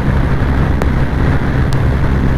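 Honda SP 125 single-cylinder engine held at full throttle near its top speed of about 100 km/h, under steady wind rush on the microphone.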